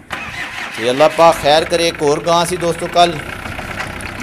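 A Hyundai Shehzore pickup's diesel engine starting and then running, with voices talking over it.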